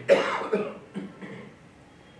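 A man coughing close to a microphone: a loud cough just after the start, a second about half a second later, then a softer one about a second in.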